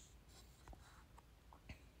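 Near silence broken by three faint, short taps about half a second apart, the clearest near the end: fingertips tapping a smartphone screen.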